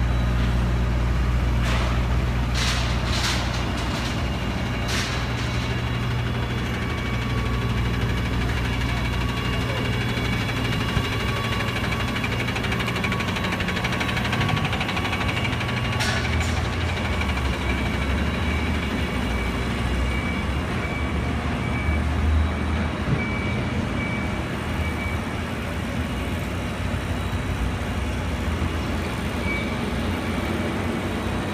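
A heavy truck engine runs with a low rumble at a construction site, heaviest in the first several seconds. A few sharp knocks and clanks come in the first five seconds and one about halfway through. A run of evenly spaced high beeps follows in the latter part.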